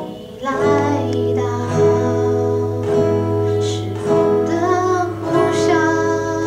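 A female vocalist singing into a microphone over steel-string acoustic guitar accompaniment. Her line comes in about half a second in, after a brief dip.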